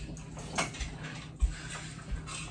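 Handling knocks and rustles of a stainless steel cooking pot being grabbed and swung about in a small room, with a dull thump about a second and a half in.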